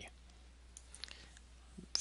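Near silence: room tone in a pause between sentences, with a few faint short clicks about a second in.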